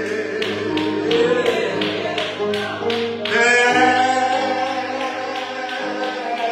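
Church song: sung voices holding and sliding between notes over a steady beat of sharp taps, about three a second.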